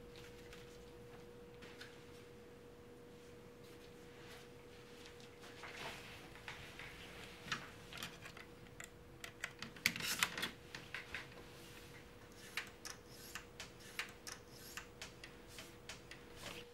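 Scattered small clicks and short rustles of studio gear being handled, such as a cable being plugged into an external drive, over a faint steady hum. The clicks grow more frequent partway through, with a brief busy cluster in the middle.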